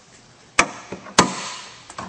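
Pickup truck hood being opened: two sharp metallic clacks about half a second apart as the latch lets go and the hood lifts, the second trailing off with a short ringing tail, then a light tick.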